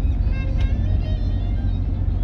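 Steady low rumble of a vehicle driving, heard from inside the cab, with music playing over it.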